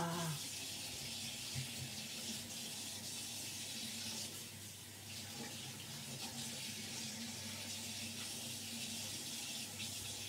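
A steady high-pitched hiss with a faint low hum underneath, with a small low knock about a second and a half in.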